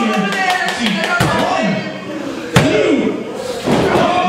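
Voices shouting and calling out around a wrestling ring, with one sharp slam on the ring mat about two and a half seconds in.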